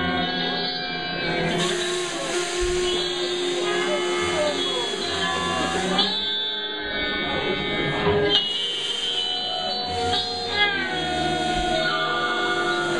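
Live rock band playing, electric guitar prominent with long held notes and sliding pitches, picked up by a small camera's microphone in the club. Voices run along with it.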